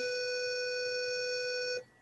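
A continuous, steady electronic tone at one buzzy mid pitch, like a beeper or busy signal, that cuts off suddenly near the end.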